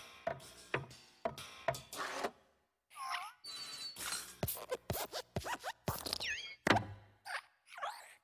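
Cartoon sound effects for the hopping Pixar desk lamp: a quick series of springy thumps and boings as it bounces, with gliding squeaks twice as it moves, and one loudest thump about two-thirds of the way through.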